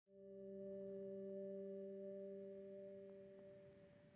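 Faint held chord of a few steady electronic tones, low and soft, swelling in just after the start and slowly fading away near the end.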